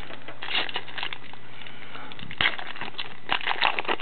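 Foil trading-card pack wrapper being torn open and crinkled by hand, crackling in irregular bursts, the sharpest about two and a half seconds in.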